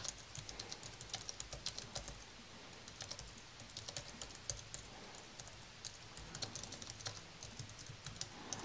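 Typing on an Apple aluminium wired USB keyboard: a fast, irregular run of light key clicks, with a couple of brief pauses.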